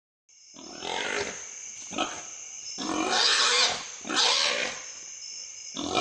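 Wild hog grunting and squealing in about five harsh, rasping bursts roughly a second apart, with a faint steady high whine underneath.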